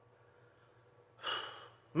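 Near silence, then a man's short audible breath in the second half, just before he starts speaking again.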